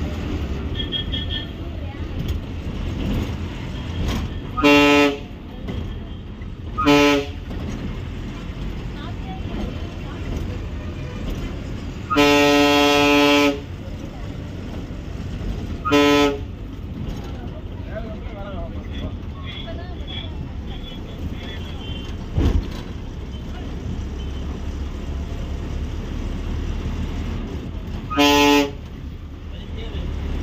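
Bus horn honked five times, four short blasts and one longer blast about twelve seconds in, over the steady low running of an Ashok Leyland bus's diesel engine heard from the cab.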